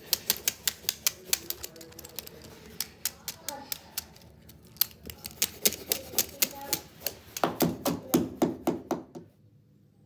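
Beyblade spinning tops knocked together by hand in a rapid run of sharp clacks, several a second, thinning out in the middle and stopping suddenly about a second before the end.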